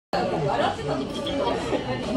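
Indistinct chatter of several voices, after a brief dropout at the very start.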